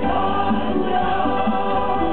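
Live Christian worship song: a woman sings into a microphone over a Korg electronic keyboard, with other voices singing along.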